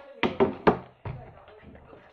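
Three quick knocks close together in the first second, the last the sharpest, followed by fainter scattered sounds.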